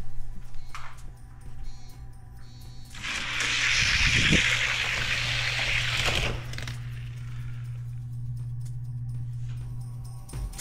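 Diecast toy cars rolling down a plastic drag-race track, a loud hissing roll starting about three seconds in and stopping about three seconds later as they reach the finish. Background music runs throughout.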